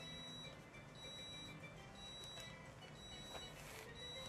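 Rice cooker's finished signal: a faint high beep repeating about once a second, announcing that the rice is cooked.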